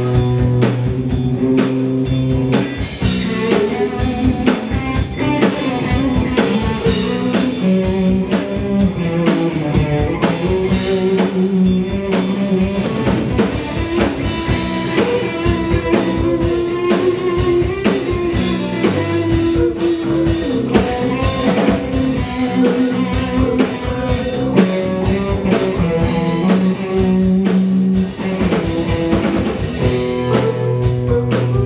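Live rock band playing a blues-rock instrumental jam with electric guitars, electric bass and a drum kit, at a steady beat.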